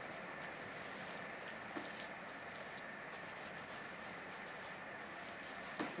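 Faint, soft rubbing and pressing of soapy hands on wet wool fibre laid out for wet felting, over a steady low hiss.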